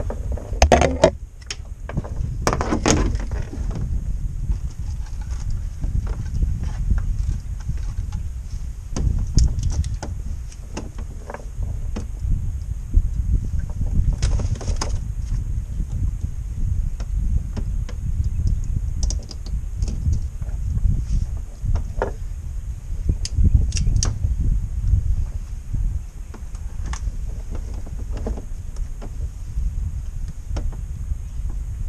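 Fishing tackle and kayak gear being handled: scattered clicks, light rattles and knocks, a louder cluster of them in the first few seconds, over a steady low rumble.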